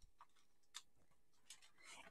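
Near silence, with a few faint, light clicks from a clear plastic photopolymer stamp case being handled.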